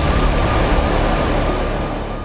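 A news segment's title stinger: a loud, dense swell of noise with a deep low end and a thin steady high tone, fading near the end.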